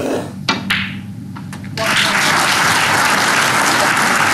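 A few faint sharp clicks, then a snooker arena audience breaks into applause a little under two seconds in and keeps clapping.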